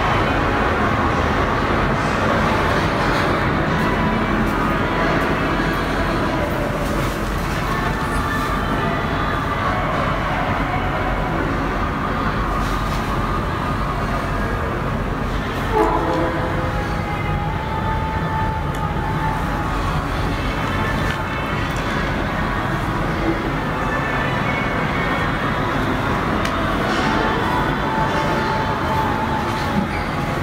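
Steady, fairly loud background noise with faint music in it, and a single short knock about sixteen seconds in.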